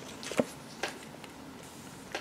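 Tarot cards being handled on a cloth-covered table: two soft clicks, about half a second and just under a second in, as a card is drawn from the deck.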